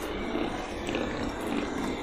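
Steady rushing street ambience with a low rumble and no distinct events, as picked up outdoors by a handheld vlogging microphone.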